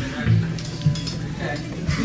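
A punk band's amplified instruments between songs: low sustained electric bass or guitar notes with a few scattered drum hits, over voices in the room.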